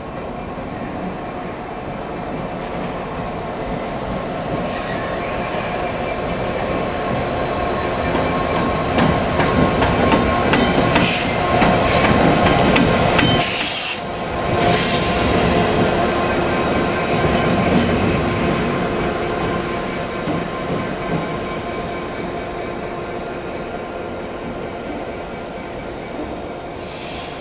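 Class 66 diesel locomotive's two-stroke V12 engine running as it passes light engine, growing louder to a peak near the middle and then fading. There is a brief drop-out about halfway through.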